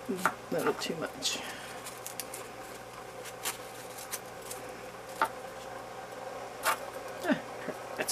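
Small handling sounds of a candle wick being pulled and adjusted on a small wooden holding block: soft rubbing and a few scattered light clicks, over a steady faint hum.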